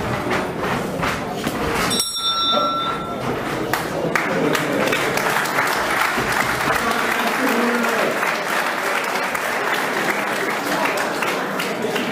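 A boxing ring bell rings briefly about two seconds in, marking the end of the fighting, and from about four seconds in the crowd applauds steadily.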